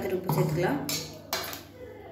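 A slotted steel ladle scraping and knocking against the inside of a stainless steel pressure cooker pot while stirring a vegetable kuruma, with two sharp clinks about half a second apart near the middle.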